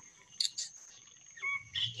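Outdoor garden ambience with a steady high-pitched insect drone, typical of crickets. Two brief clicks come about half a second in, and a short pitched chirp near the end.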